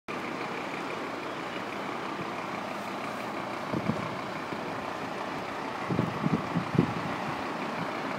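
A fire engine running steadily at the scene, a constant mechanical hum, with a few short low thumps about four seconds in and again near six to seven seconds.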